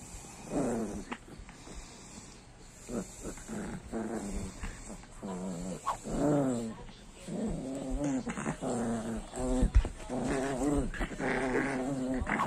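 Miniature pinscher growling while she mouths and tugs a plush toy against a teasing hand: play growls in short bouts at first, then almost without a break through the second half.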